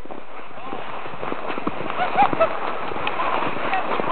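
Footsteps crunching through snow at a walking pace, with faint distant voices.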